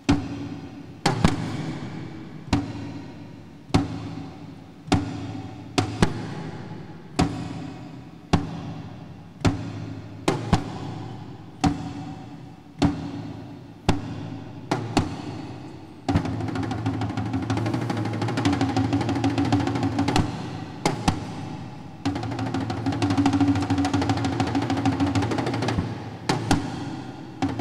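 Large Tuvan shaman's frame drum struck with a beater, single ringing beats about once a second, then about two-thirds of the way in breaking into a fast, continuous roll, briefly interrupted by a couple of single beats before the roll resumes.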